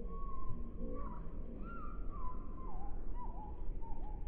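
A bird singing: a string of clear whistled notes that slide up and down around one pitch, about eight of them, over a steady low rumble.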